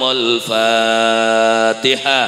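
A man chanting an Arabic prayer into a microphone. After a short phrase he holds one long, steady note for over a second, then breaks off with a short falling tail near the end.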